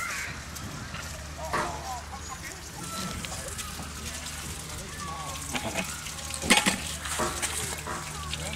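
A young child's short, high vocal sounds over outdoor playground background, with a sharp clatter about six and a half seconds in.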